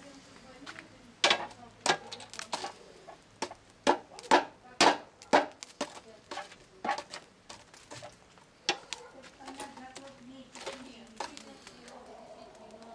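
Metal shashlik skewers clinking against each other and the steel mangal as they are turned and lifted off the charcoal grill: an irregular run of sharp metallic clinks, loudest in the middle.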